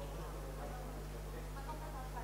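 A steady low buzzing hum fills the room, with faint, indistinct voices murmuring underneath it.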